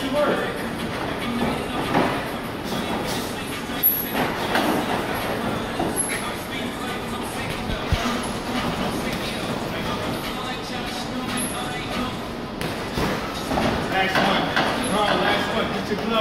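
Indistinct voices in a boxing gym during sparring, with a few sharp thuds of punches and footwork on the ring, the clearest about 2, 4 and 8 seconds in; the voices grow louder near the end.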